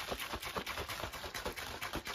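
Protein powder and liquid being shaken hard in a shaker bottle: a quick, steady rhythm of sloshing knocks, several strokes a second.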